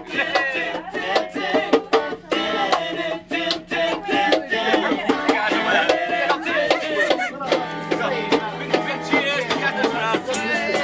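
Live band playing close by on acoustic and electric guitars, with a singer and a steady run of sharp percussive strokes.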